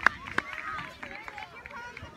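Hand claps close by at about three a second, stopping about half a second in, then a crowd of voices chattering and calling out.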